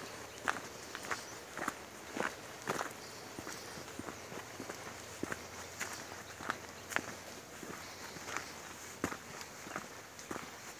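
Footsteps on a rocky dirt hiking trail, a steady walking pace of about two steps a second.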